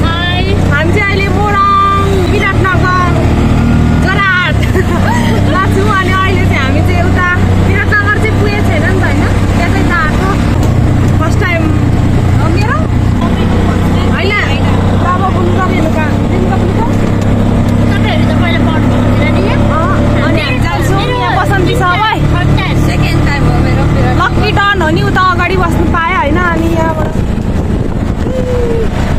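Young women's voices chattering and laughing over the steady low drone of a moving three-wheeled rickshaw, heard from inside its cabin.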